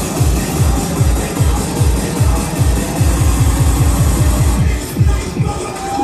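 Electronic bass music from a live DJ set played loud over a club sound system, driven by rapid heavy bass hits that each drop in pitch, about four a second.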